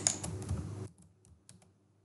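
A few faint, sharp clicks of computer keyboard keys.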